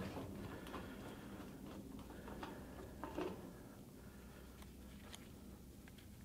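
Faint, scattered small metal clicks and ticks from a hand-lever rivet nut tool being handled and adjusted.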